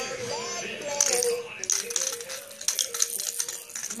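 Hard plastic baby toys rattling and clacking in quick irregular bursts as a baby shakes and knocks them together, over a faint stepping melody. Singing starts right at the end.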